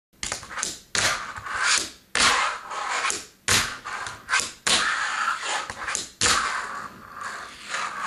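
A fingerboard with a Berlinwood Extrawide wooden deck is being ridden on a tabletop. Its small wheels roll across the table in a run of short rolls, each starting with a sharp clack of the board hitting the table. There are about six of these, one every second or so.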